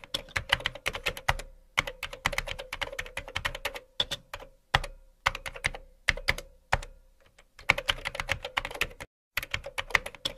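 Computer keyboard typing sound effect: rapid key clicks in runs, broken by brief pauses of silence, twice for most of a second, about seven and nine seconds in.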